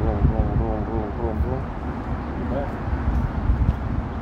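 A man's voice saying a few indistinct words in the first second and a half and once more briefly later, over a low, uneven rumble of wind on the microphone.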